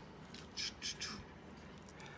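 Trading cards and foil pack wrappers being handled: a few short, faint rustles, clustered about half a second to a second in.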